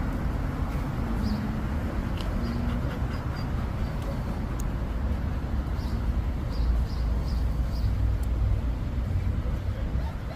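Steady low rumble of road traffic, heaviest in the bass and unchanging throughout.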